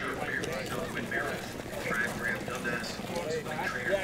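Indistinct talking from people standing around the winning horse, over a steady low background rumble.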